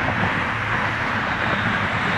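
Airbus A380 on final approach, its four jet engines giving a steady, even rushing noise as it comes toward the microphone.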